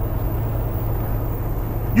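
Steady low rumble of a car's idling engine, heard from inside the cabin.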